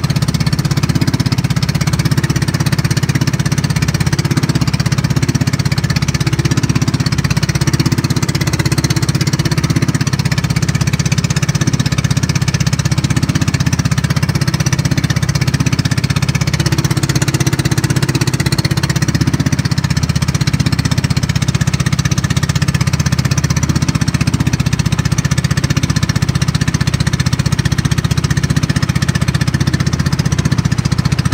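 Engine of a motorized outrigger boat (bangka) running steadily at cruising speed with a fast, even chugging beat, over a hiss of wind and water. The beat grows more distinct in the last few seconds.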